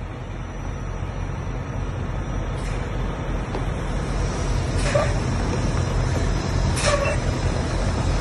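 Semi truck's diesel engine running at a low, steady rumble that grows louder as the tractor backs under a trailer to hook up. A few brief sharp sounds rise above it, the clearest about five and seven seconds in.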